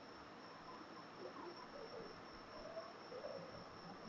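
Faint room tone: a steady high-pitched tone held over low background hiss.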